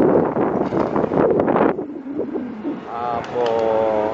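Busy street ambience: crowd chatter mixed with wind noise on the microphone, loud for about two seconds and then dropping away. Near the end a person nearby starts speaking.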